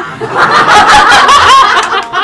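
A roomful of people laughing together. The burst swells about half a second in and dies down near the end.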